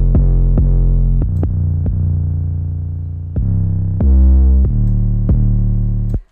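Trap beat playing back from a music-production program: a loud, sustained 808-style synth bass changing note several times, with sharp drum-machine hits over it. The bass runs through a sidechain compressor keyed to the kick while its threshold is adjusted.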